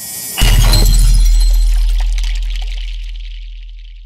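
Logo-reveal sound effect: a rising whoosh that breaks about half a second in into a crash-like impact with a deep sub-bass boom and a high glittering ring, both fading slowly over the next few seconds.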